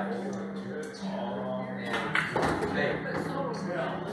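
Indistinct voices talking in a bar, with music faintly underneath and a steady low hum.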